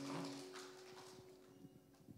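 Faint footsteps of high-heeled shoes knocking on the stage floor as a woman walks across it, under a held low note from the band fading out.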